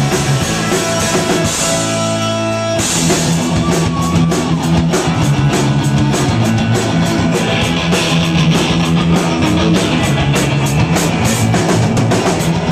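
Live rock band playing loud, with electric bass, guitar and drum kit. About two seconds in, the drums drop out for a second under a held chord, then the full band crashes back in and keeps driving.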